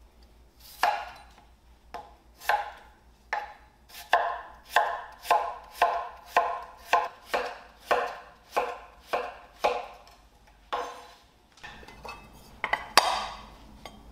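A knife chopping on a cutting board in slow, regular strokes, about two chops a second through the middle, each a short woody knock. There are a few scattered chops before and after the run, the loudest near the end.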